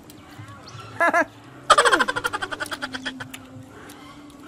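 A person laughing: two short chuckles about a second in, then a loud burst of laughter that breaks into rapid pulses and fades out over about a second and a half.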